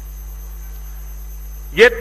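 Steady electrical mains hum on a public-address microphone feed in a pause between phrases of a man's speech, with a faint steady high whine above it. His voice comes back near the end.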